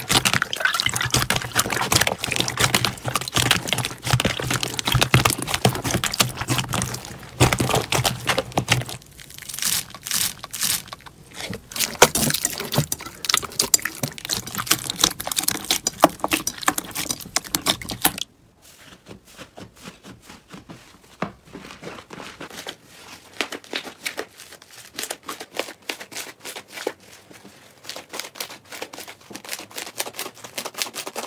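Hands squeezing and kneading slime, close up: a dense run of wet squelches, small pops and crackles, with the slime worked in a basin of water at first. About two-thirds of the way through it turns quieter and sparser.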